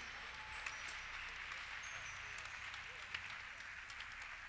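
Faint crowd noise from a large congregation in a big hall: scattered applause and murmuring after a choir song has ended, with a few light clicks.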